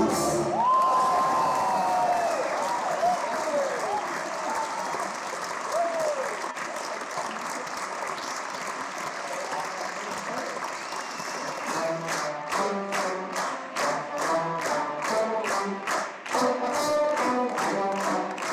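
A choro ensemble's piece ends right at the start, followed by an audience applauding with cheering shouts. After about twelve seconds the clapping turns into a steady rhythmic clap, two to three claps a second, with voices singing along.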